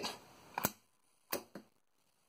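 12 V solenoid air valve clicking as it actuates: a sharp click a little over half a second in, another about 0.7 s later and a fainter tick just after. This is the intake valve opening to pressurise the air line that pushes the solder paste out.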